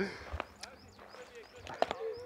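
Faint bird chirps in the background, with a short chuckle at the start and one sharp click near the end.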